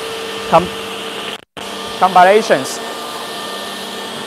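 Steady whir and hiss of running machinery with faint constant hum tones under it. A short spoken syllable comes just after the start and a brief voiced 'uh' around two seconds in, and the sound cuts out for a moment about a second and a half in.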